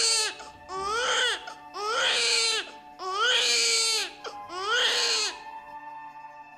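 Newborn baby crying in five wails of about a second each, every wail rising and then falling in pitch. The cries stop shortly before the end, over soft held notes of background music.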